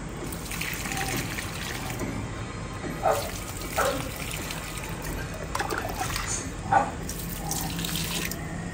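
Water poured from a plastic mug onto potted plants, splashing over leaves and soil, with a few brief louder sounds about three, four and seven seconds in.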